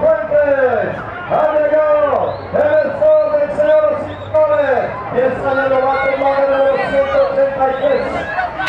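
A man's voice calling a BMX race in Spanish, with a steady tone running underneath.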